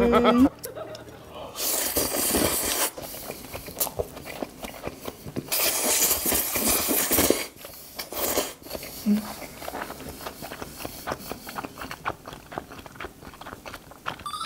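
A man slurping udon noodles in two long, hissy pulls of a second or two each, then chewing them with many small wet clicks.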